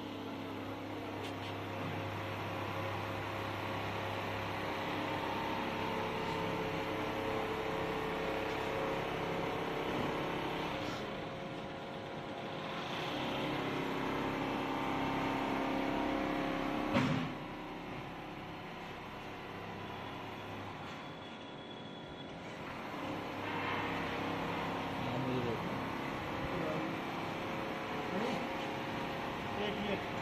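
Richpeace computerized single-needle quilting machine running: a steady machine hum made of several held tones that shift in pitch and level in stretches as it works. A single sharp knock comes a little past halfway.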